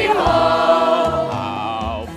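Stage-musical ensemble singing sustained notes in harmony with vibrato over an instrumental accompaniment with a low bass line, easing off slightly toward the end.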